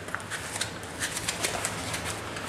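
Cardboard box being handled and opened, its flap and sides giving a quick run of short scrapes and rustles over a low steady hum.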